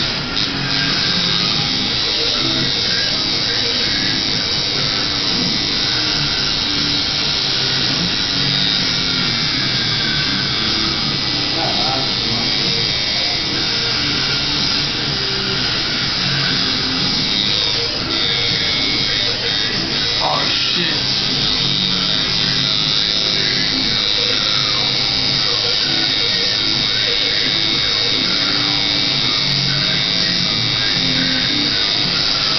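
Tattoo machine buzzing steadily against skin, under background music with vocals.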